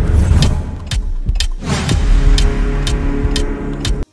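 Intro music with a steady beat of about two hits a second over a deep rumbling effect, with a falling swoosh about one and a half seconds in.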